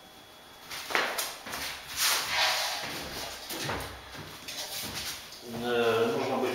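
Laminate floor planks being handled and slid over foam underlay, with a sharp knock about a second in followed by scraping and rustling. A man's voice starts near the end.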